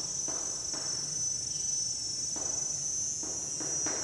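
Steady high-pitched insect chirring in the background, with intermittent short scratching strokes of chalk writing on a blackboard.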